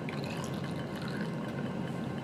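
Faint, steady liquid noise from water heating in a small glass beaker on a hot plate, nearly at the boil, while crude salicylic acid dissolves in it for recrystallization.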